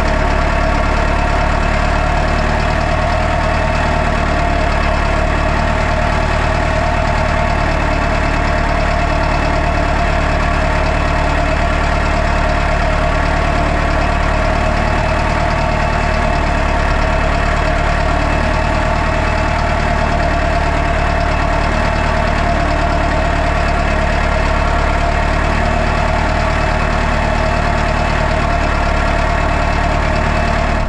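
Valtra N123 tractor's four-cylinder diesel engine running steadily as the tractor drives slowly through deep snow, with a steady whine above the engine note.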